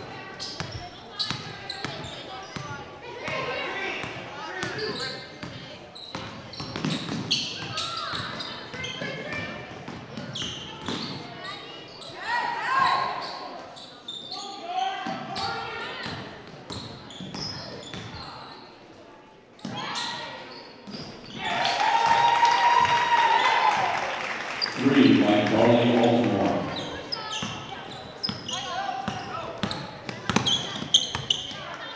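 Basketball dribbling on a hardwood gym floor, with many short, sharp knocks, under the echoing voices of players, coaches and spectators. The voices rise to a louder stretch about two-thirds of the way in.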